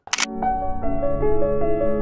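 A camera-shutter click sound effect, then a short electronic music sting: steady keyboard notes stepping from one pitch to the next over a low bass.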